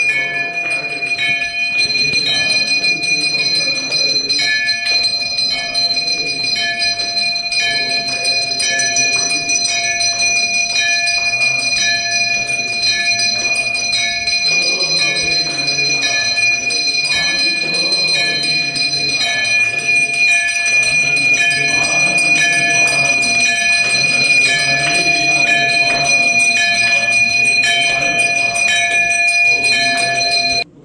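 Hindu temple bells ringing steadily and without pause during aarti worship, with devotional singing beneath the ringing.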